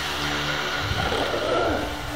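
Steady hiss of videotape static from a television as a tape starts playing, with a faint low hum under it.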